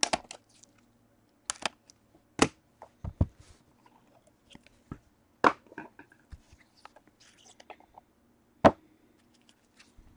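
A trading card box being handled with gloved hands: a scatter of sharp taps and knocks as it is slid out of its sleeve, set down on a table and opened, with light rustling between. The loudest knocks come about two and a half, five and a half and nearly nine seconds in.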